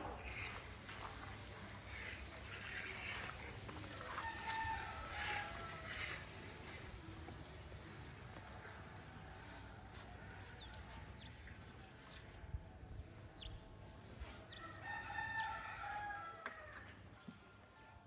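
A bird calling twice, each a long call lasting about two seconds, first about four seconds in and again about fifteen seconds in, over a steady low background hum. A single sharp tap about twelve seconds in.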